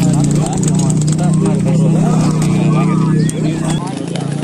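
Several people shouting and calling at once, the cries that handlers use to bring a racing pigeon down to the kolong, over a steady low mechanical hum. The hum drops away abruptly near the end.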